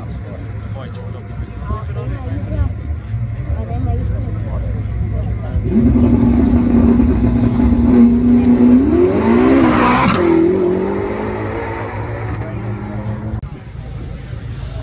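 A Ferrari supercar's engine is held at steady raised revs at the start line for a few seconds. The revs then climb and it launches with a sharp burst about ten seconds in, its pitch rising as it pulls away and fades. Crowd chatter and a low rumble run underneath.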